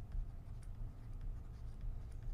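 Faint scratching of handwriting on a drawing device, with a few light ticks, over a low steady room hum.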